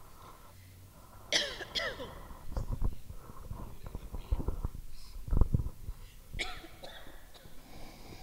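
Handling noise of a handheld microphone being passed from hand to hand: scattered bumps and knocks, the loudest thump about five seconds in. Short bits of voice come through about a second in and again near the end.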